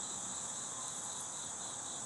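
Crickets trilling in a steady, continuous high-pitched chorus.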